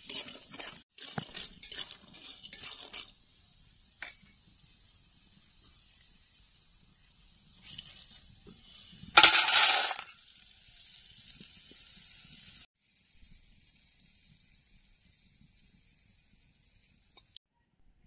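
A metal spatula scraping and stirring potato pieces frying in an iron kadai, with light clinks, for the first few seconds. About nine seconds in comes the loudest sound: a short clattering rush as the fried pieces are tipped from the kadai into a steel bowl.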